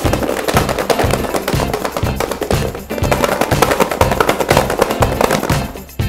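Garlic cloves rattling inside a closed plastic food container shaken hard, a fast continuous clatter as the cloves knock their papery skins loose; it dies away near the end. Background music with a steady beat runs underneath.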